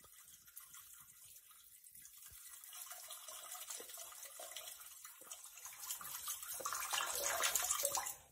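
Sound effect of a person peeing: a stream of liquid splashing, faint at first and growing steadily louder.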